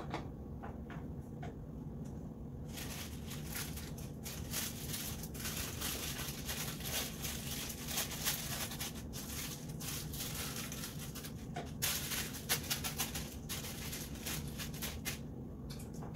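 Light scraping of a wooden spoon stirring thick melted chocolate in a saucepan. From about three seconds in there is dense rustling and crinkling as a sheet of white paper is handled. A steady low hum runs underneath.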